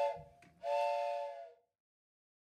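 Steam train whistle sounding a chord of several steady tones over a hiss. The tail of one short blast is followed, about half a second in, by a longer blast of about a second that cuts off.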